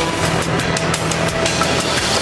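Television news intro theme music with heavy drum hits, loud and dense.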